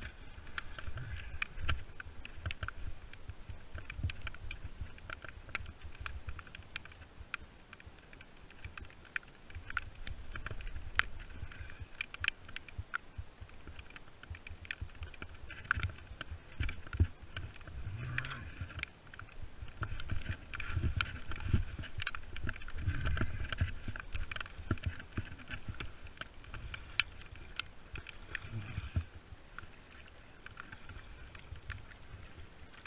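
A small non-motorized boat being paddled on a lake, with water sloshing at the strokes and irregular low rumbling bursts that grow stronger from about two-thirds of the way in. Many scattered sharp taps sound throughout.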